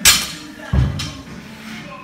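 Barbell snatch on a wooden lifting platform: a sharp clank of the bar and plates at the start, a heavy thud about three-quarters of a second in, then another clank, over background music.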